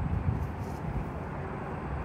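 Steady low rumbling outdoor background noise with no clear events in it.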